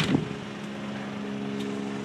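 Medical helicopter flying away, heard as a steady, even hum.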